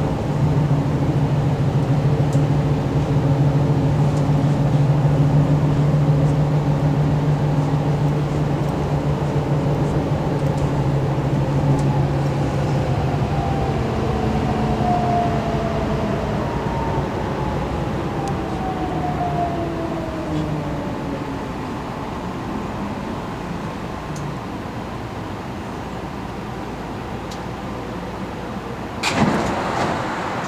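BART train running, heard from inside the car: a steady low hum from the propulsion motors, then several whining tones falling in pitch as the train slows into a station. A sharp loud noise comes near the end.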